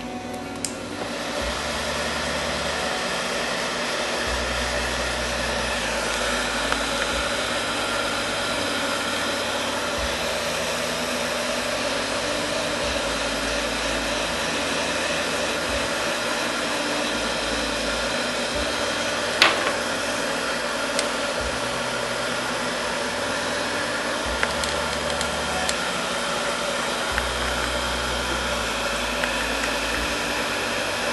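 Handheld hair dryer blowing steadily, switched on about a second in, drying a fresh coat of varnish on a decoupaged shell pendant before the next coat. A single sharp click about two-thirds of the way through.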